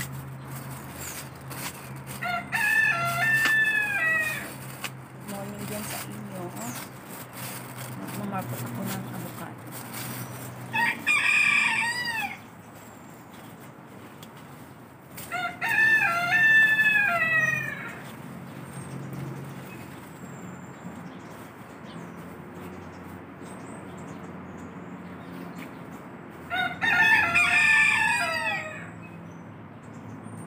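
A rooster crowing four times, each crow about two seconds long, with several seconds between them.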